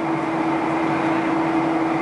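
Steady jet airliner cabin noise during the climb: a continuous rush of engine and air noise with a steady mid-pitched hum running through it.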